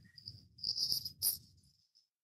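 A faint, high-pitched tone broken into short chirp-like pulses, over a low, quiet background hum, with a couple of faint clicks.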